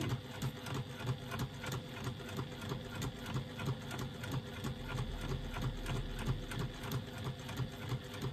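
Domestic electric sewing machine running steadily, basting at a long stitch length through thick faux leather backed with foam, its needle making a fast, even rhythm of strokes.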